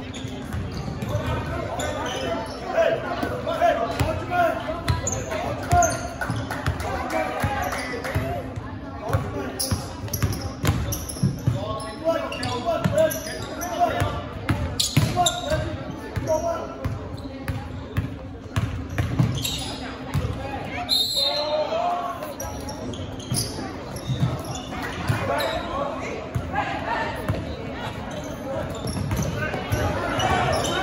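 Basketball being dribbled on a hardwood gym floor during a game, repeated bouncing thuds echoing in a large hall, with players' and spectators' voices throughout.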